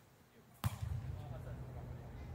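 A volleyball struck once by a player's hands or arms, a single sharp smack about two-thirds of a second in, followed by a low steady rumble.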